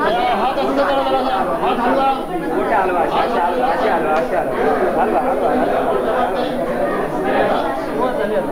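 Many people talking at once: a crowd's overlapping chatter, with no single voice standing out, echoing in a hall-like room.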